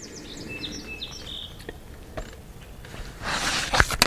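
Quiet outdoor background with a few faint bird chirps. Near the end comes a brief rustle and a click as the camera is handled and moved.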